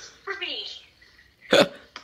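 A woman's voice laughing briefly, with one short, sharp, breathy burst about one and a half seconds in.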